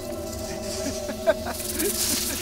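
Film sound effects of small snakes hissing and slithering over straw among eggs, with a single sharp click a little past the middle and a few short, low voice-like sounds near the end.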